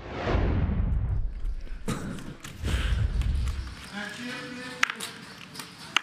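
Transition whoosh sound effect that sweeps down in pitch over about a second, with a low rumble under it for a few seconds. Faint voices and a sharp click follow near the end.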